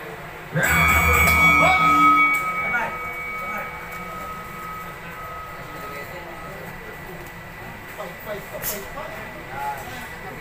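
A signal for the start of a boxing round, a bell-like ring about half a second in that fades away over several seconds, with a low buzz under its first two seconds. Spectators chatter faintly behind it.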